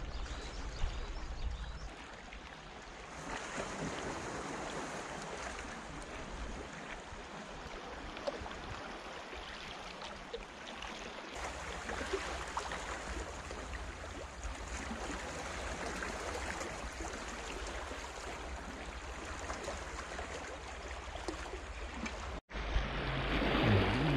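Small waves on a calm sea lapping and gurgling against shoreline rocks, a steady wash of water noise. It cuts out briefly near the end.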